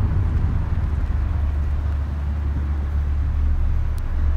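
Steady low drone inside the cabin of a JAC T50 CVT, its 1.6 DOHC 16V engine running as the car slows. The engine keeps running: the start-stop system does not cut in.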